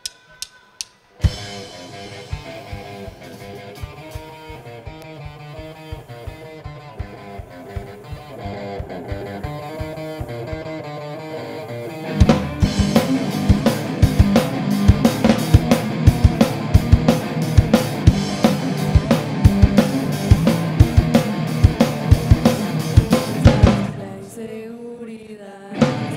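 Live rock band of electric guitars and drum kit playing. A few sharp clicks come in the first second; then a quieter intro with regular drum hits, and about twelve seconds in the full band comes in much louder with hard drum strikes, easing off shortly before the end.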